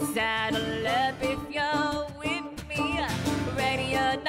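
Live acoustic pop-country song: a female lead vocal sung with vibrato over banjo and acoustic guitar.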